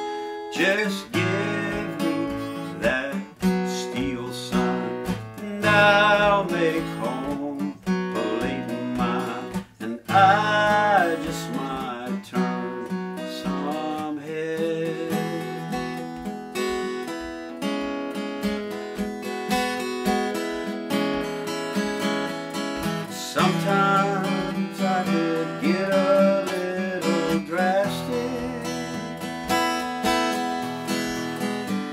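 Acoustic guitar played solo, picked and strummed through an instrumental passage.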